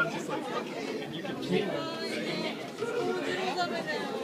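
Many people talking at once, an indistinct hubbub of voices in a large indoor hall.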